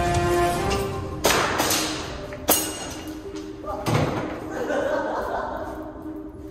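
Background music cuts out about half a second in. Two loud, sharp shots from an airsoft gun follow about a second apart, ringing off the room, with a few lighter knocks and voices near the end.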